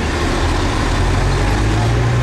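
Heavy lorry engine running close by, a steady low rumble with street traffic noise around it.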